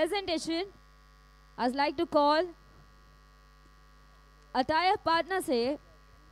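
A steady electrical mains hum runs faintly under everything and is plain in the pauses between three short phrases of a woman speaking into a microphone.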